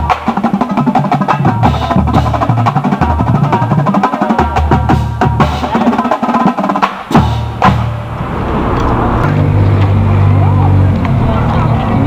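A marching drumline of snare and tenor drums playing a fast, dense rhythmic passage in the open air. A little past the halfway point the sharp drum strokes stop, leaving voices and a steady background hum.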